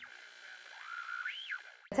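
A soft electronic sound effect from the intro music: a single tone drifts slowly upward, then swoops up and back down about a second and a half in. A sharp click comes near the end.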